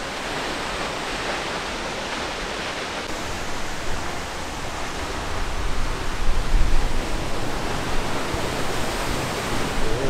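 Multnomah Falls waterfall sounding as a steady rush of falling water, growing louder from about halfway through, with a low rumble swelling around the louder part.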